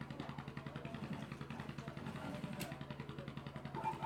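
Industrial sewing machine running steadily, its needle stitching in a fast, even rhythm over a low motor hum.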